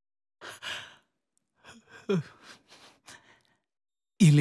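A person sighing: an airy out-breath about half a second in, then fainter breathing and a brief low vocal sound that drops in pitch around two seconds in.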